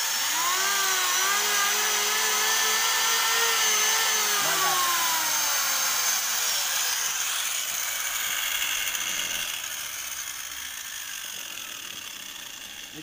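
An electric hand planer and an angle grinder running together on one 450 VA household supply through a capacitor add-on, without the meter tripping. Their motor whine is steady for about four seconds, then the tools are switched off and wind down, the pitch falling and fading over the next five seconds or so.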